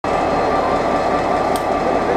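Class 59 diesel locomotive 59102, with its EMD two-stroke V16 engine, running as it moves slowly past at the head of a train. Engine and wheel noise hold at an even, loud level throughout.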